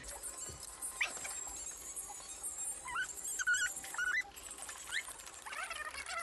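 Several short, high squeaks rising in pitch, coming singly about a second apart, with a quick cluster of three in the middle, over faint background music from the variety show's soundtrack.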